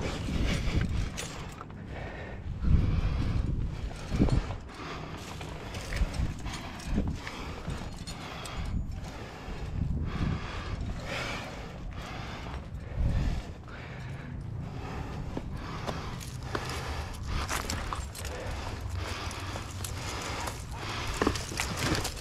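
Handling noise from a climber moving up limestone: irregular knocks, scrapes and clicks of hands, climbing shoes and gear against the rock. A few heavier low thumps come near the start, about three and four seconds in, and again about thirteen seconds in.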